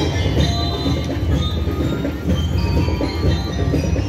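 Marching band music: a dense low drum rumble under several high, sustained ringing tones, steady and loud throughout.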